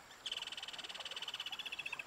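A frog calling: one rapid high-pitched trill of evenly spaced pulses that starts a quarter second in and fades near the end.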